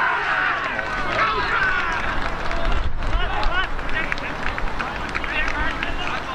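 Footballers shouting and cheering just after a goal, several raised voices overlapping. Wind gusts on the microphone about halfway through.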